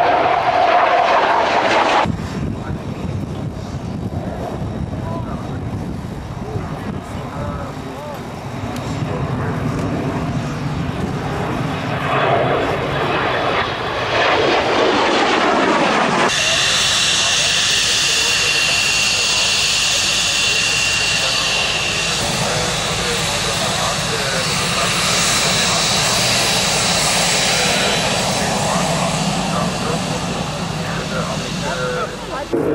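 Military jet engines: a jet passes, its roar dropping in pitch as it goes by. After an abrupt cut comes a steady high-pitched jet whine.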